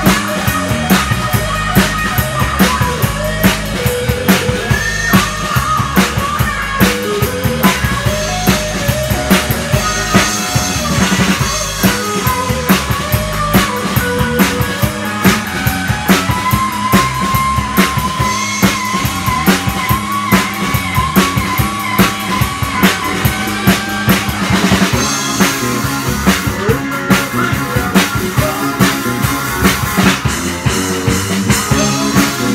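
Rock band playing live: an electric guitar plays lead lines with bent and held notes over a drum kit keeping a steady beat.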